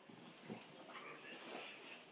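A bulldog's faint vocal noises and body rubbing on a carpet as it rolls and wriggles on its back, with a brief thump about half a second in.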